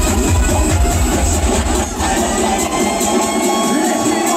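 Loud Vinahouse electronic dance music from a club sound system. A heavy pounding bass beat drops out about halfway through, leaving higher synth lines in a breakdown.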